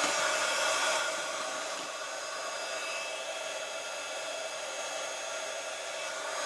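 Craft heat tool blowing steadily, a hiss of air over a motor whine, drying wet watercolour paint on card.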